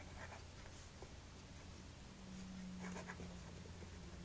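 Gold medium nib of a Lamy 2000 fountain pen writing on paper: faint scratchy pen strokes, with the slight feedback that makes this pen "sing a bit" as it writes. A steady low hum runs underneath.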